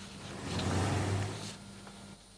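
A car passing by on the street, its sound rising and fading over about a second.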